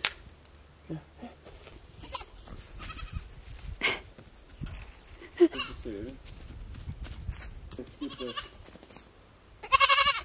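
Young goat kids bleating: a few short, wavering calls in the middle and a louder call near the end.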